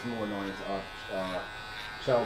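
Electric hair clippers with a grade-three guard buzzing steadily as they cut through thick hair at the back of the neck.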